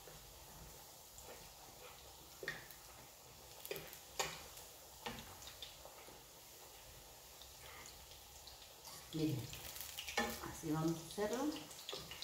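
Buñuelo dough frying in hot oil in a skillet, a faint steady sizzle, with a few light clicks of a fork or spatula against the pan.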